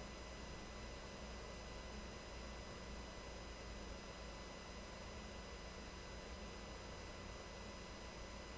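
Faint, steady hiss with a low electrical hum and no distinct sounds: the recording's background noise between narrated lines.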